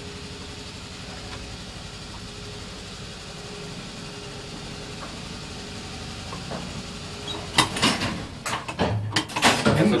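Staley electric traction freight elevator car running, heard from inside the car as a steady hum with a faint steady tone. About seven and a half seconds in, a burst of loud clicks and clatter breaks in.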